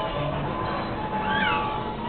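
Carousel music playing, with one short high squeal from a small child, rising then falling, about one and a half seconds in.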